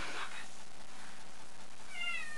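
A domestic cat meowing: a short call right at the start, then a high, falling meow beginning near the end.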